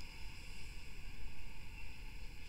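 Steady faint hiss of room tone, with no other sound.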